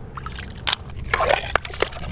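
Shallow seawater sloshing as a hand and a shovel dig through a tide puddle full of rocks and pebbles, with a few sharp clicks of stones knocking together.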